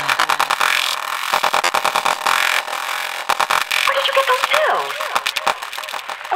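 Trance track breakdown: the kick drum has dropped out, leaving fast clicking percussion over a hissy synth wash. About four seconds in, warbling, processed voice-like sounds begin, leading into a spoken-word sample.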